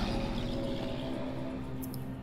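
Background film-score music: a soft, steady drone of held low tones.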